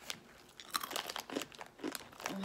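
Plastic snack wrapper of gluten-free granola bites being torn open and handled, with short scattered crackles and crunches after a quiet first half-second.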